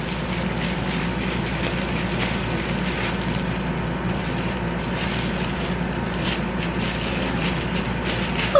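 Plastic bubble-wrap packaging rustling and crinkling irregularly as a camera body is unwrapped by hand, over a steady background hum.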